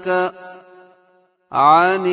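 Male Quran reciter's voice chanting in melodic tajweed style. A held note ends just after the start and trails away at a verse-end stop. After about half a second of silence, the voice starts the next verse with a rising glide about one and a half seconds in.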